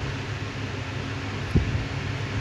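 Steady background hum and hiss, with a single short knock about one and a half seconds in.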